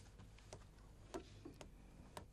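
Near silence in a room, broken by about four faint, irregular clicks, the clearest a little after one second in.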